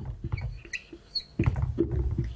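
Marker pen squeaking and scratching on a whiteboard as a line of words is written, with a short high squeak just over a second in.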